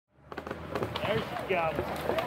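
People talking outdoors over a steady low engine hum, with a few scattered clicks.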